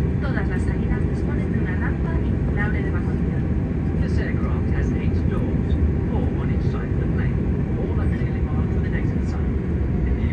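Steady low rumble inside the cabin of an Airbus A330 taxiing, its engines at low power, with faint indistinct voices of people talking in the cabin.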